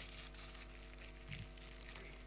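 A crinkly bag being handled, its wrapping crackling faintly in short irregular bits.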